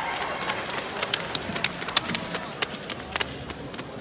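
Sharp snaps of a karate gi cracking with each fast technique of a kata: a quick irregular run of a dozen or so, the loudest about two seconds in, over a low murmur of the hall.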